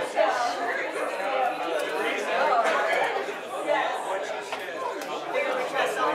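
Many people talking at once in a large hall: a congregation chatting and greeting one another, their voices overlapping with no one voice standing out.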